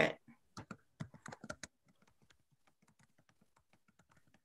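Computer keyboard typing: irregular light key clicks, a quick run of them in the first two seconds, then fainter scattered taps.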